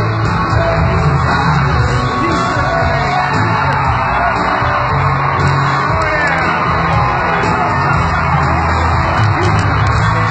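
Live band playing loud in an arena, heard from among the audience, with the crowd singing along and yelling.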